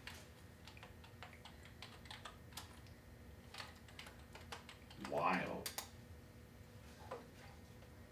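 Typing on a computer keyboard: scattered runs of short keystroke clicks as a word is entered into a web search, with a brief voice about five seconds in.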